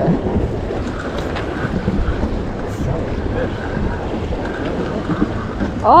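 Wind blowing across the microphone: a steady low noise.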